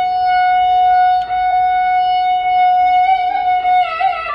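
Carnatic concert music in raga Sankarabharanam: a single long, steady held note on one pitch, which breaks into a downward gliding phrase right at the end.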